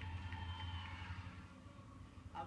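Background music from a television highlights package, heard through the TV's speaker over a steady low hum, with a held high note in the first second before it fades away toward the end.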